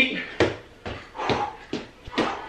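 A boxer's feet landing on a rubber-matted floor while he bounces and shuffles in footwork, a short thud about twice a second.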